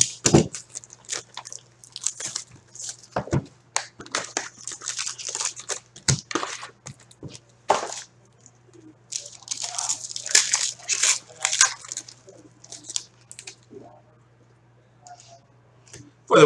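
A box of Upper Deck Ice hockey cards being opened by hand: a box cutter slicing the packaging with sharp taps and clicks, then foil card packs tearing open and wrappers crinkling in a burst about two thirds of the way in.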